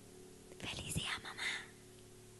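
A woman's short breathy, whispered vocal sound close to the microphone, starting about half a second in and lasting about a second, over a faint steady hum.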